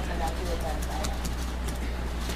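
Faint, indistinct voices over a steady low hum, with a few light clicks and taps scattered through.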